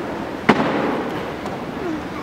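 A single sharp knock about half a second in, ringing briefly in the room, over a steady rustling background: the sound of people in a church going down onto wooden kneelers.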